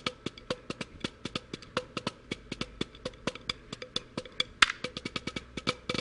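Wooden drumsticks playing a quick, steady run of strokes on a rubber practice pad, with a couple of louder accented hits near the end.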